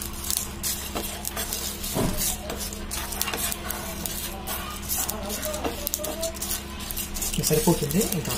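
A wooden spatula is stirring whole spices in a pan as they roast: coriander and cumin seeds, bay leaves and star anise. The seeds scrape and rattle against the metal in quick, irregular strokes over a light sizzle.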